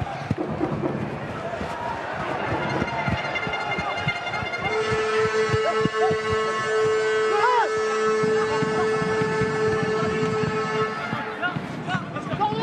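A stadium hooter sounds one long, steady, unwavering note for about six seconds, starting about five seconds in, over crowd noise and shouting; with the match clock at 40 minutes, it is the hooter marking the end of the first half while play goes on.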